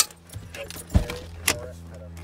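Sharp clicks and knocks of handling inside a parked vehicle: one at the start, a heavier low thump about a second in, and another click about a second and a half in. Under them runs the vehicle's steady low hum.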